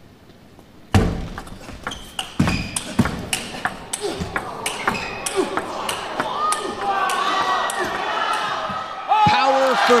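A table tennis rally: the celluloid ball clicks sharply off the bats and the table in a quick exchange after the serve. Near the end, voices in the crowd rise as the point is won.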